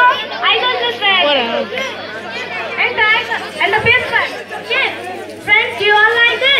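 Children's voices talking and chattering over one another.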